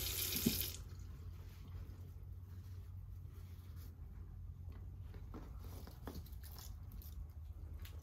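Kitchen tap running into the sink, shut off sharply under a second in. Then soft rustling and small clicks as a damp paper towel is handled and unfolded.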